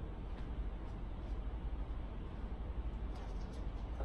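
Room tone: a steady low hum and hiss, with a few faint ticks about three seconds in.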